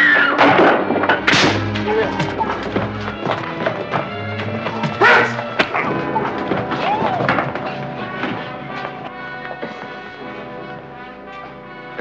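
Film score music playing over a fistfight, with heavy thuds of blows and bodies striking furniture, the hardest in the first second or two and again about five seconds in. The music fades down as the man is knocked out.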